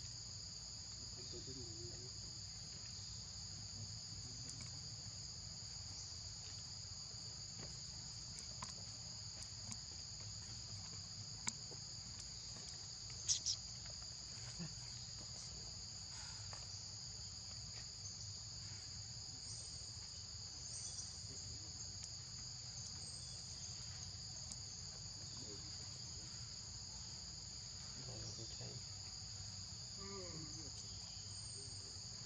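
Insects droning steadily at a high pitch, with a few brief sharp clicks about eleven and thirteen seconds in.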